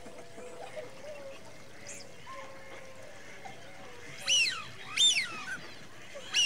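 Two loud bird calls about a second from the end, each sweeping down in pitch, over a faint steady background with low wavering tones.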